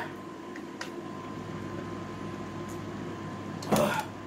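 Steady low room hum with a faint, thin, high whine over it; near the end, one brief loud noise.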